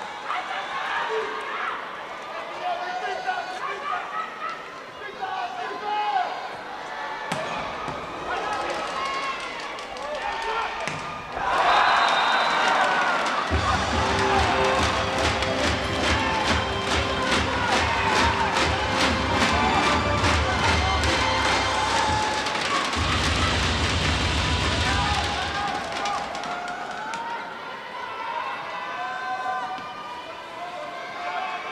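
Indoor volleyball arena between rallies: voices and crowd at first. Then, about eleven seconds in, a much louder stretch of music with rapid, evenly spaced crowd claps of organized cheering, easing off in the last few seconds.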